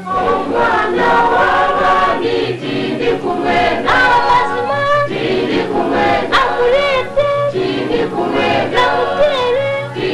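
Music with a choir of voices singing over a steady low bass line.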